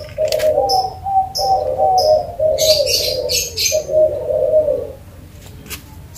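A dove cooing in a run of repeated, slightly wavering phrases, which stop about five seconds in. Higher, short bird chirps come in between.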